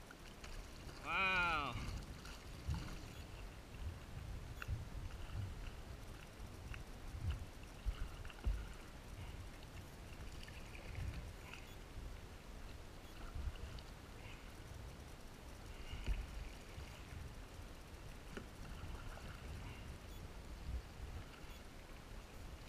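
Paddle strokes in the water and water lapping against a stand-up paddle board, with soft knocks and splashes every one to three seconds. A short vocal call sounds about a second in.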